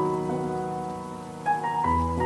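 Solo piano playing a slow, calm piece, its notes left ringing, with new notes struck about a second and a half in.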